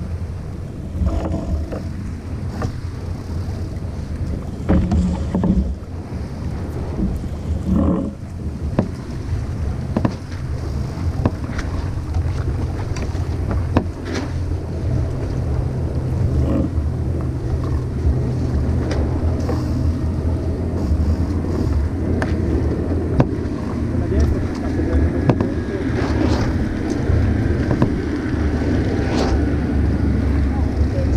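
Wind buffeting the microphone and water rushing past the hull of a sailboat running under spinnaker, a steady low rumble that grows a little louder after the middle. Occasional sharp knocks and clicks sound over it.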